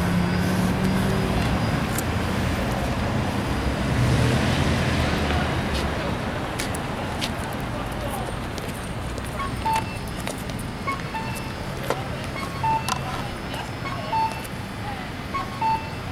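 Street traffic: a steady rumble of road vehicles, with one passing more loudly about four seconds in. From about ten seconds in, short electronic beeps repeat at uneven intervals.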